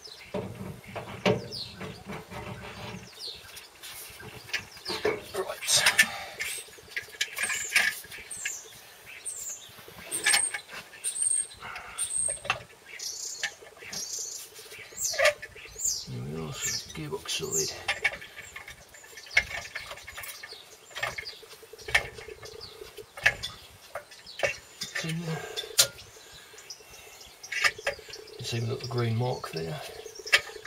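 Metal clinks and knocks as a new clutch plate and clutch cover are handled and offered up to an engine flywheel, with a few short high chirps about ten seconds in.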